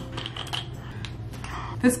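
Faint, scattered small clicks and rattles of a handheld flashlight being handled as batteries are put into it.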